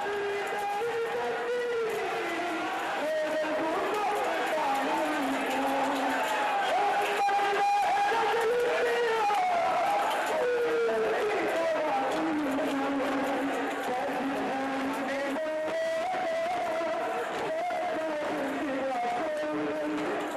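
A man chanting a noha (mourning lament) in long held notes that slide up and down, over steady crowd noise from the gathering.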